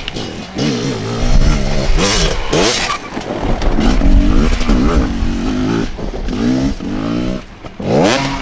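Enduro dirt bike engines revving in repeated short throttle bursts, the pitch climbing and dropping again many times as the riders work the bikes over rough ground.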